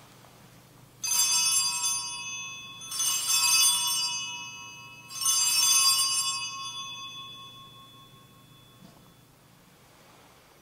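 Altar bells rung three times, about two seconds apart, each ring shimmering and slowly fading. The ringing marks the elevation of the consecrated host at Mass.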